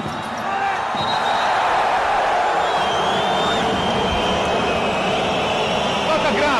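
Crowd noise in a basketball arena during live play, swelling about a second in and holding steady, with a ball bouncing on the court.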